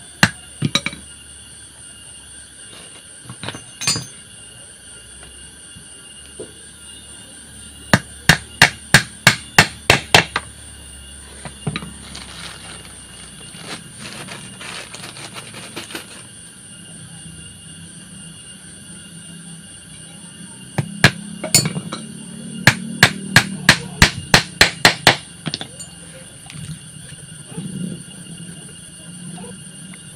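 Hammer driving nails through small wooden curtain-rod brackets into a softwood strip: two quick runs of sharp strikes, about nine and then about a dozen, a few per second, with a few single knocks in the first seconds.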